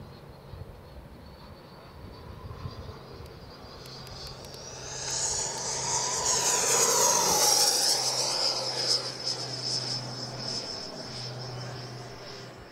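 Sebart Avanti XS RC jet's Schubeler 120 mm electric ducted fan whining as the jet makes a fast pass. The whine swells about four seconds in and peaks midway, its pitch falling as the jet goes by, then fades.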